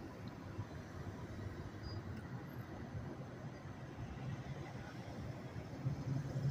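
Faint outdoor traffic ambience: a low, steady rumble of vehicles in the distance.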